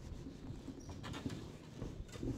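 A handheld duster wiping marker off a whiteboard, with faint, irregular rubbing strokes.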